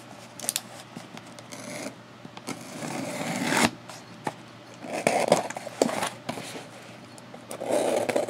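A cardboard shipping box being handled and shifted on a desk: rustling scrapes of cardboard, one building up over about a second midway, with a few light knocks and taps.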